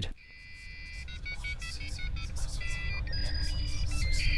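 Dial-up modem connection sounds: a quick run of short electronic beeps and steady tones jumping from pitch to pitch, over a low drone that slowly swells in.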